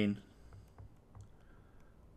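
A few faint, light clicks of a stylus tapping on a tablet screen while words are handwritten.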